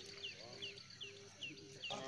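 A small animal's short, high, falling chirp repeated steadily about three times a second, faint, with faint voices underneath.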